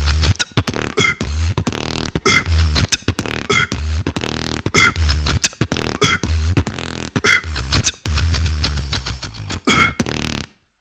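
A beatboxer performing a battle round: a deep bass kick roughly every 1.2 seconds, with bright snare-like hits and quick clicks and hi-hats packed in between.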